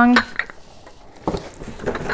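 A few light clinks and knocks from a Scentsy wax warmer and its dish being handled on a table, the sharpest about a second and a half in.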